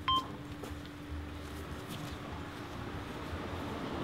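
A sharp click with a brief high beep right at the start, then a faint low steady hum over quiet background noise.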